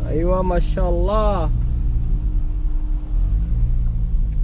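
Steady low rumble of a car's engine and road noise heard inside the cabin while driving. Two long, wavering vocal calls from a person come in the first second and a half.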